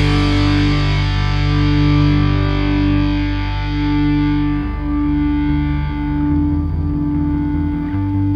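Rock band's song: a distorted electric guitar through effects holds long, ringing notes over a low sustained bass. A loud chord struck just before fades away over the first few seconds, and the low part changes about halfway through.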